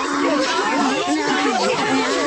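Several overlapping voices talking at once, garbled so that no words can be made out.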